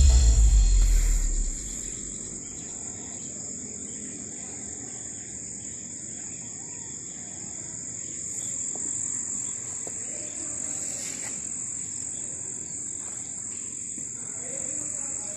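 Music with a beat fades out over the first second or two. Then a steady, high-pitched chorus of insects such as crickets or cicadas holds over faint outdoor background noise.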